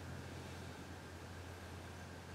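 Quiet room tone: a steady low hum with faint hiss, and no distinct handling sounds from the lock.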